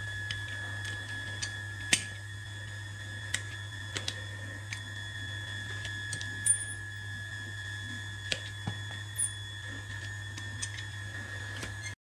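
Hoof nippers cutting a horse's hoof wall: a series of sharp, irregularly spaced snaps over a steady low hum.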